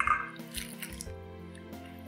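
Water poured from a glass into a stainless steel bowl of flour and worked in with a wooden spoon, loudest in the first second, over steady background music.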